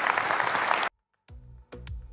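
Audience applauding, cut off abruptly a little under a second in; after a brief silence, music with a steady beat starts.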